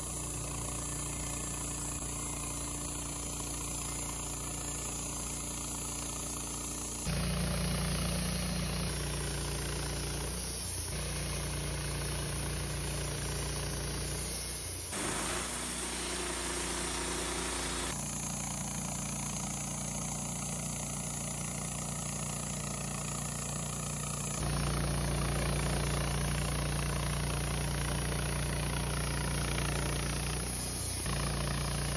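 Wood-Mizer LT15 Start portable bandsaw sawmill running with its blade cutting through a Douglas fir cant: a steady engine drone whose pitch and loudness change abruptly several times.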